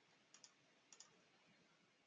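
Near silence: faint room tone with two soft computer mouse clicks, each a quick press-and-release pair, about half a second in and again about a second in.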